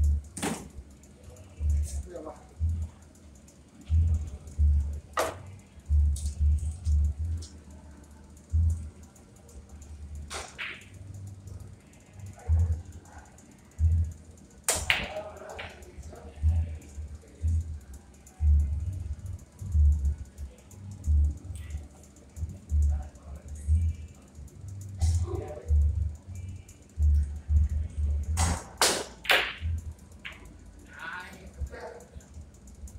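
Billiard balls clacking sharply as pool shots are played, a handful of single clacks spread out and a quick run of three near the end, over background music with a heavy, uneven bass line.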